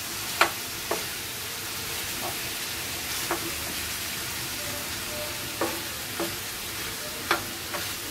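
Marinated beef pieces sizzling steadily in a non-stick frying pan, while a wooden spatula stirs them, with several sharp clacks against the pan scattered through, the loudest about half a second in.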